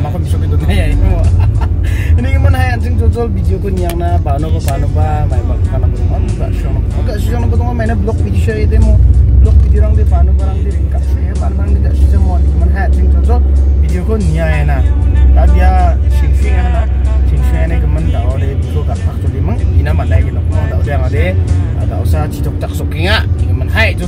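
A man talking over background music, with the steady low rumble of a car's engine and tyres heard from inside the cabin while driving.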